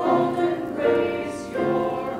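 Small mixed choir of men and women singing, moving to a new sustained note a little under once a second.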